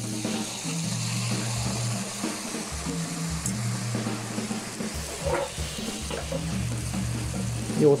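Background music with sustained low notes over a steady sizzle of vegetables frying in sesame oil in a pan on high heat, as sake is poured in.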